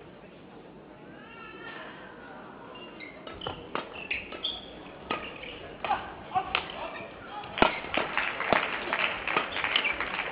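Badminton rally: rackets striking the shuttlecock in sharp, irregular cracks, mixed with high squeaks of players' shoes on the court. It starts sparse with a few squeaks, and the hits and squeaks come thicker and louder in the second half, the loudest crack a little past halfway.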